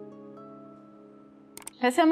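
Soft background score of sustained held chords that shift pitch a couple of times and slowly fade. Near the end there are a few quick clicks, a transition sound effect.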